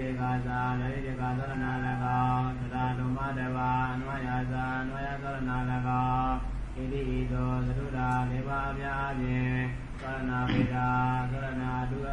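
A man's voice chanting Pali text in a steady, nearly level monotone, with short breaks between phrases.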